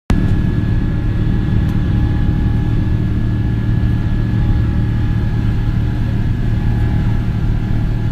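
Jet airliner cabin noise during takeoff and initial climb: the engines at takeoff power and the airframe give a loud, steady rumble, with a faint steady whine above it.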